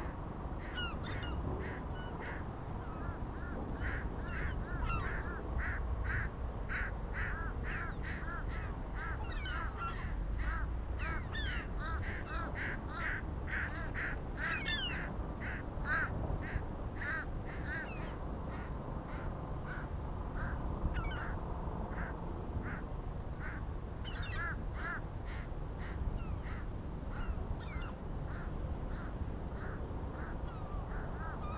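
A flock of gulls calling over and over, many short calls close together and busiest in the middle, over a steady low rumble of wind on the microphone.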